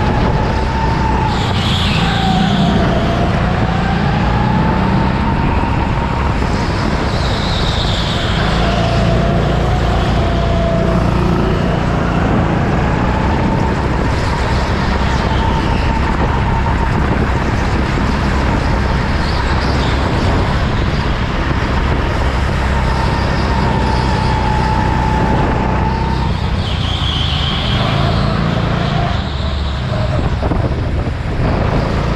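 Go-kart driven hard around an indoor track, heard from the seat: a steady rumble under a motor note that rises and falls with speed. Brief high squeals come about two seconds in, at about eight seconds and near the end, as the tyres slide in the corners.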